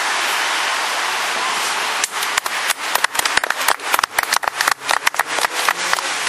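A small group of people clapping in irregular, uneven claps, starting about two seconds in, over a steady rushing background noise.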